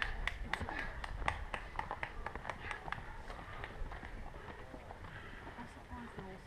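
Runners' footsteps on a dirt and rock trail, a quick, irregular patter of shoe strikes from several people that thins out after about three seconds.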